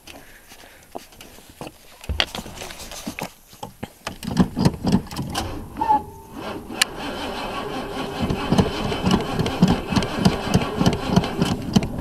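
1985 Oldsmobile Cutlass engine being cranked by its starter in the cold, turning over in an even rhythm of pulses from about four seconds in without catching. The battery, which the owner suspects is dead, has little left. A single thump comes about two seconds in.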